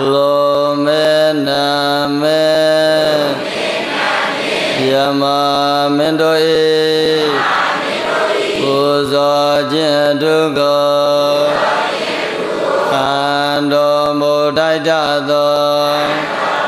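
Burmese Buddhist monk chanting, a single male voice holding long, melodic phrases, four of them with short breaths between.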